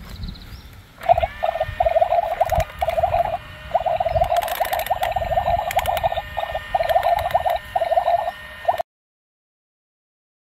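Frogs croaking in a fast-pulsing chorus, in bursts with short gaps. It starts suddenly about a second in and cuts off sharply near the end.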